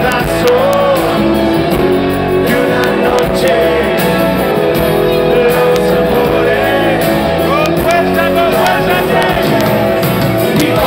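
Live rock band playing at full volume, with electric guitars, drums and congas, and a lead melody line sliding up and down in pitch.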